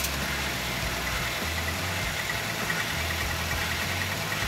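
Car engine idling steadily at about 700 RPM.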